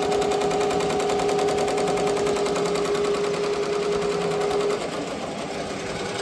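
Ricoma multi-needle embroidery machine stitching lettering into a denim jacket: a fast, even rattle of needle strokes over a steady hum. The hum drops away about five seconds in and the sound gets a little quieter.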